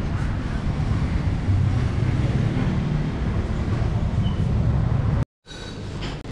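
Low, steady rumble of street traffic outdoors. About five seconds in it cuts off abruptly and is followed by the quieter background of a café interior.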